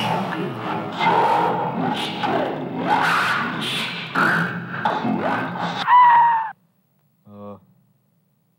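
Loud, jumbled voices overlapping, with no clear words. About six seconds in they rise into a held shout that cuts off suddenly. One brief vocal blip follows a second later.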